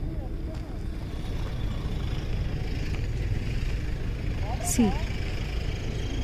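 Steady low rumble of wind buffeting the microphone.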